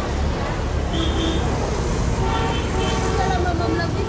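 Busy open-air market: background voices of vendors and shoppers over a low, constant traffic rumble, with a short steady tone about a second in.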